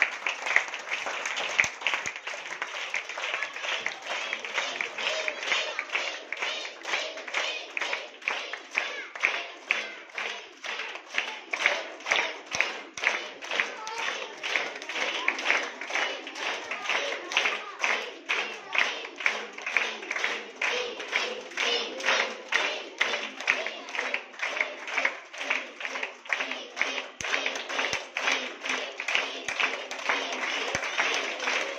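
A group of schoolchildren clapping together in a steady rhythm, about two to three claps a second, with children's voices throughout.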